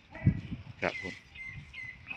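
Faint, thin, high bird calls, one held for most of the second half, heard under a man's brief words.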